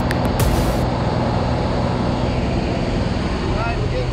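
Steady drone of a small skydiving plane's engine and propeller, heard from inside the cabin in flight. Voices start faintly near the end.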